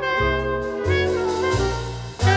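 Big band jazz orchestra playing: saxophones and brass in ensemble over steady bass notes.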